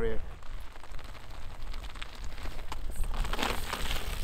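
Mountain bike tyres rolling over loose gravel and stones, a crunching crackle with a few sharp clicks, growing louder over the last second as the bike comes close.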